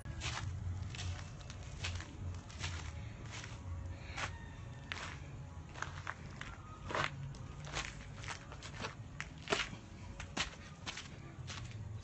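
Footsteps walking over a concrete path littered with gravel, broken brick and dry leaves: a run of uneven scuffs and clicks, with a steady low rumble under them.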